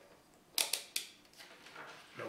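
Handling noise from a handheld multimeter and its test leads: a few short, sharp clicks and rattles about half a second and a second in as the meter and probes are picked up and moved on a wooden table.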